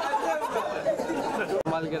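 Several people talking over one another in a crowd, with the voices breaking off for an instant about a second and a half in.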